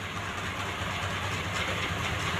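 Steady low rumble with a faint hiss over it, no distinct event.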